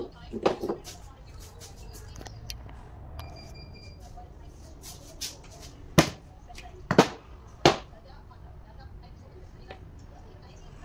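Metal parts of a truck starter motor knocking and clanking on a workbench as they are handled and set down: a quick cluster of knocks in the first second, then three sharp knocks about six, seven and seven and a half seconds in.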